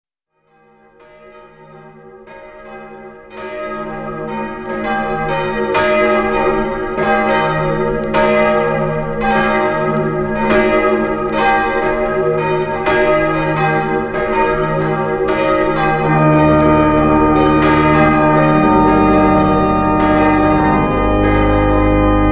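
Church bells ringing in steady succession, fading up from silence over the first few seconds. About three-quarters of the way in, an organ enters with sustained low chords beneath the bells, as the instrumental introduction to the carol.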